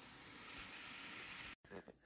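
Faint, steady sizzle of onions caramelizing in a pan, cut off abruptly about one and a half seconds in.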